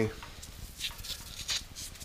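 Gloved hand stirring damp shredded-paper worm bin bedding: a few short, soft rustles.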